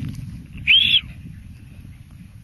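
A single short, loud whistle about two-thirds of a second in, rising then falling in pitch over about a third of a second, over a low steady rumble.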